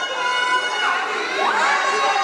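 Boxing crowd shouting and cheering, many voices calling out at once, with one shout rising sharply about one and a half seconds in.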